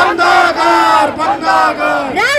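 A slogan shouted into a microphone and carried over horn loudspeakers: one drawn-out, high-pitched call held for nearly two seconds, with other voices joining it early on.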